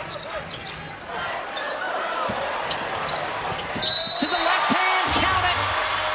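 Basketball bouncing on a hardwood court amid arena game noise, with a short high squeak about four seconds in, after which the sound gets louder.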